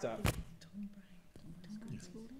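Quiz team members conferring in low, hushed voices, with one sharp click about a quarter second in.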